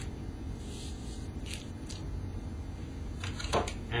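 Faint handling noises as a plastic wall stencil is lined up against a wall: a soft rustle and a few light taps, the last of them near the end, over a steady low hum.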